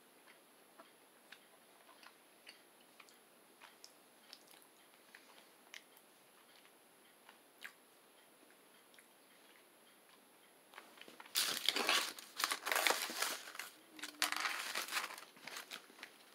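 Faint regular ticking about twice a second, then about eleven seconds in, some four seconds of loud crinkling and crunching close to the microphone, like a chocolate bar's wrapper being handled.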